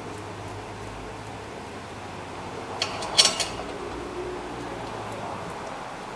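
A short cluster of metallic clinks about three seconds in as the steel caliper bracket and its bolts are handled and started by hand, over a steady low hum from the shop.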